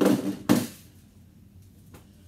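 Two short clattering bumps about half a second apart as objects are handled and set down.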